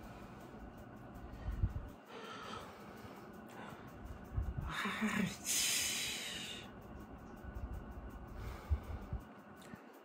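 A man breathing hard and sniffing, with a longer, louder hissing breath out about five and a half seconds in, as he reacts to stinging, watering eyes after holding them open without blinking. A few low bumps of movement.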